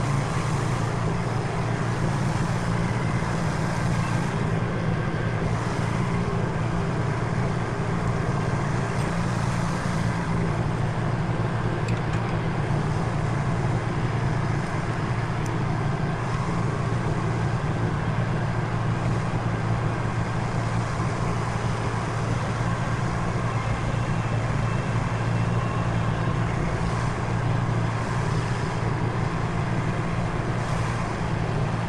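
Grasshopper 125V zero-turn riding mower running steadily under load while mowing grass, its engine and spinning blades making an even, unbroken drone.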